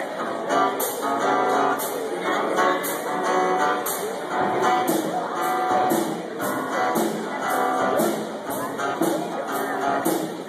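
Live band playing: guitars over drums, with steady cymbal strokes about three a second.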